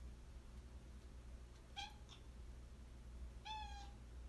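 Brown tabby house cat giving two brief, faint meows: a very short one about two seconds in and a slightly longer one, steady in pitch, near the end.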